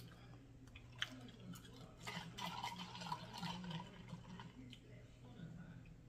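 Faint wet chewing and mouth sounds of a person eating a chopped cheese slider, with a small click about a second in.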